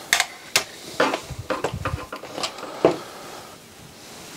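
Knocks and clicks of a CD player's opened sheet-metal chassis being handled and turned round on a wooden bench, a scattered series with the sharpest knock near three seconds in.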